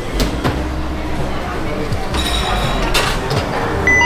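Restaurant counter background of voices, clatter and a low hum. Near the end comes a short electronic beep from a contactless card terminal as it reads a phone held to it for payment.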